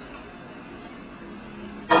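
Faint steady background hum with a soft hiss.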